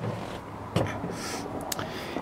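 Steady hiss of the cabin air conditioning blowing, with the 5.7-litre Hemi V8 idling underneath and a couple of soft knocks about a second in and near the end.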